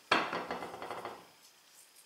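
A sudden knock on a wooden cutting board, followed by about a second of fading gritty rustling as kosher salt is pinched and sprinkled over halved acorn squash.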